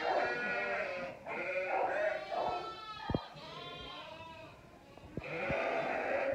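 A ewe and her newborn lambs bleating in a series of soft, pitched calls, with a quieter lull a little past the middle. The ewe is close by as she takes to both lambs.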